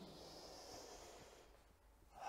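A faint, airy in-breath lasting about a second and a half, then near silence.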